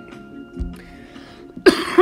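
A man coughs once, loudly, near the end.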